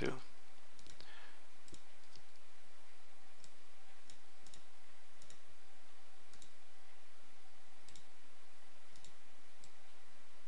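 Faint computer mouse clicks, scattered irregularly about one every second or so, over a steady background hiss.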